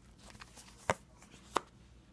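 Two light, sharp taps of tarot cards against the cloth-covered table, about a second in and again half a second later, as a card is drawn from the deck and laid down. Otherwise only faint room quiet.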